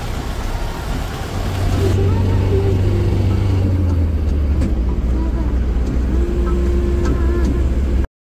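Engine and road noise heard from inside a moving SUV's cabin: a steady low rumble that grows louder about a second and a half in.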